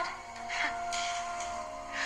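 Movie soundtrack in a pause between lines of dialogue: one steady held tone over a soft background hiss.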